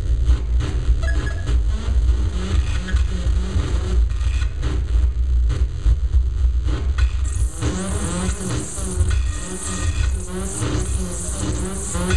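Live electronic music: a dense low bass drone, joined about seven and a half seconds in by a brighter layer of high hiss and wavering pitched tones.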